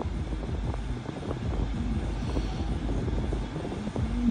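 Low, steady rumble inside a car's cabin, with faint scattered crackles over it.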